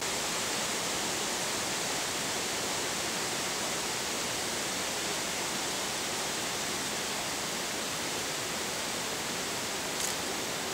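A steady, even rushing noise, loud and unchanging, that cuts in abruptly at the start.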